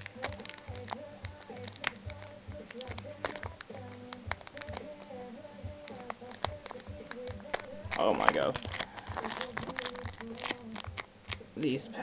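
Foil Pokémon booster pack wrapper crinkling and crackling in the hands as it is worked at, with a louder tearing crinkle about eight seconds in; the pack is hard to tear open. Background music plays quietly underneath.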